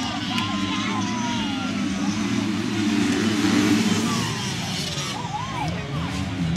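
A pack of motocross bikes' engines revving together, their pitch rising and falling as the riders race.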